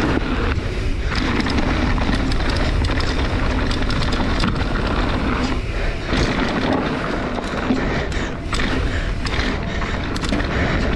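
Mountain bike ridden fast down a dirt trail: a steady rush of wind on the microphone and tyre roar over the ground, with frequent clicks and rattles from the bike over rough terrain.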